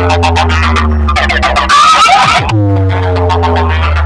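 Loud DJ competition remix played through a large horn-speaker sound box, built on a deep sustained bass drone. Each new bass hit starts with a downward-sliding note, about every two seconds, and a burst of chattering high-pitched sample sits in the middle.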